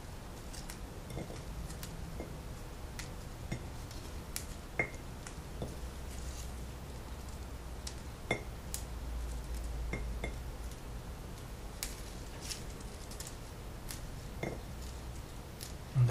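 Ripe autumn olive berries being pulled off their twigs by hand and dropping into a glass bowl, making irregular light clicks every second or two over the soft handling noise of leafy stems.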